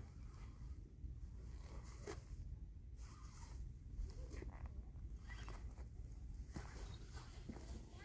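Faint wind rumble on the microphone with quiet scattered clicks and rustles of fishing tackle being handled while the line is snagged.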